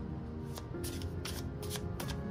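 A deck of tarot cards being shuffled by hand: a string of quick, irregular clicks as the cards slap together, with soft background music holding steady notes underneath.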